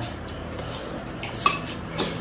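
Metal forks clinking and scraping against glass bowls of spaghetti, with one sharp, ringing clink about a second and a half in and a lighter one near the end.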